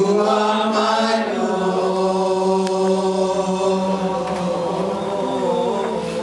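A man's voice singing a slow worship chant through a microphone, holding long notes and changing pitch only a few times.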